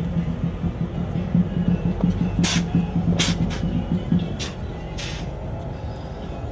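Music with a pulsing bass line that stops about four seconds in. Five short hissing bursts come at uneven intervals through the middle.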